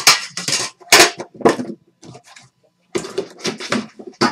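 Crisp rustling and clattering of trading cards and their packaging being handled at a table, in a string of short, sharp bursts with a quicker cluster near the end.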